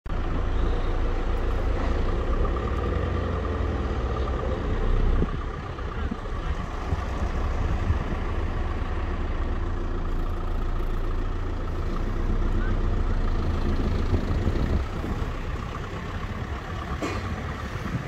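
Road traffic: cars and trucks running past, a steady low rumble of engines and tyres that eases a little about five seconds in.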